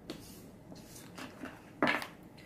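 Tarot cards handled on a wooden tabletop: a brief sliding sound, a few light taps, and a louder clack near the end as the cards are picked up and set down.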